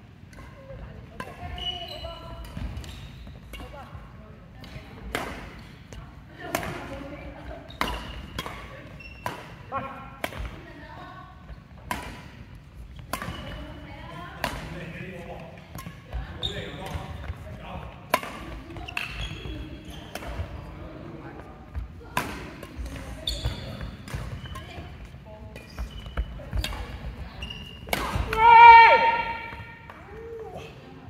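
Badminton rackets hitting a shuttlecock in a rally, sharp clicks about every second or so, in a large sports hall. Near the end there is a loud, high-pitched squeak.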